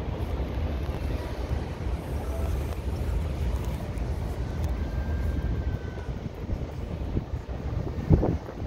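Steady low outdoor rumble with an even background hiss and no distinct event.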